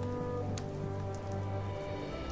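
Soft background music score of sustained, held notes and chords, under a faint even hiss.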